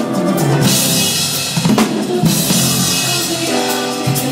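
Two drum kits playing together in a gospel song, kick and snare hits with crash cymbals ringing out about half a second in and again past two seconds, over the band's backing music.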